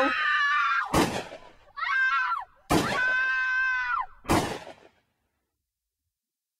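A high-pitched voice screaming in three cries, with three sharp bangs about a second and a half apart between them, then the sound cuts off.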